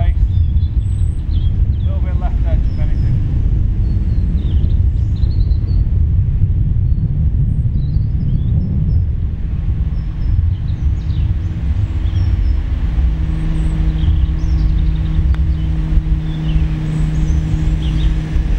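Wind buffeting the microphone, a heavy low rumble, with faint bird chirps; about ten seconds in a steady engine hum joins it.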